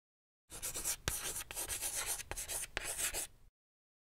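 Chalk scratching on a chalkboard as a line of text is written out in quick strokes, with a few sharp taps of the chalk. It starts about half a second in and stops suddenly near the end.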